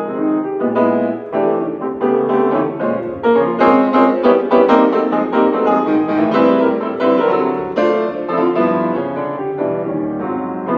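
Grand piano played solo, a continuous stream of notes and chords, growing busier and brighter for a couple of seconds in the middle.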